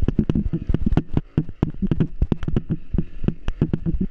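Small motorcycle running while it rides over a bumpy dirt path, with a dense, irregular clatter of knocks and rattles over a low engine rumble.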